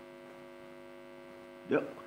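A faint, steady hum made of several fixed pitches fills a pause in a man's speech. He starts speaking again near the end.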